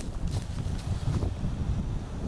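Wind buffeting the microphone of a handheld camera outdoors, a gusty, uneven rumble.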